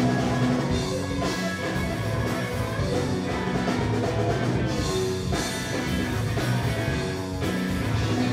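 Live blues-rock band playing an instrumental passage: electric guitars, bass guitar and drum kit together, steady and loud, with no vocals.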